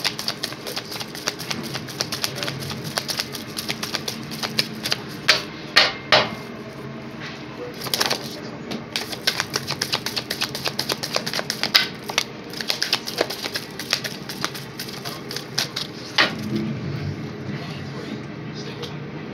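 A deck of cards being shuffled by hand: a dense, irregular run of quick flicks and taps of card against card.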